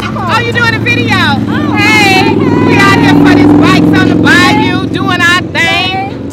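A motorcycle engine running close by, its steady drone swelling louder through the middle and easing near the end, under women talking.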